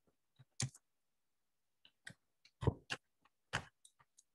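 Computer keyboard keystrokes: about ten faint, irregular clicks as a short command is typed and entered.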